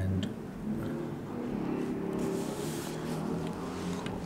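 A man softly humming a low, wandering tune. About two and a half seconds in there is a brief rustle of cloth or skin contact.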